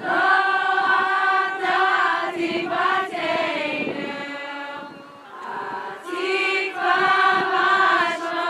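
A group of people singing together, holding long notes; the voices fade briefly about five seconds in, then come back strongly.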